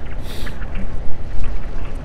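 Wind buffeting the microphone as a steady low rumble, with a brief hiss about a third of a second in.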